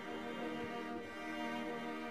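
Slow orchestral music with bowed strings playing long held notes.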